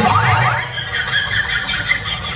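A comic sound effect over the stage sound system: a quick rising glide in pitch right at the start, then a steady low hum with faint high tones.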